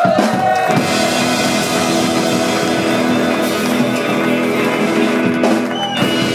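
Live garage punk band playing: electric guitars and bass holding a sustained, ringing chord over drums and cymbals.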